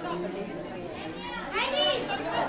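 Boys' voices shouting and calling out during a volleyball rally, with one longer shout that rises and falls in pitch near the end.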